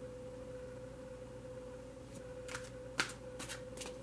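Tarot cards being handled and shuffled: a few crisp clicks and snaps starting about halfway through, over a faint steady tone.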